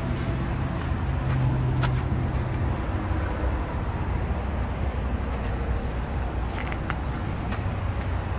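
Steady low rumble of vehicle engine noise, with a steady hum over it for about the first three seconds and a few faint clicks.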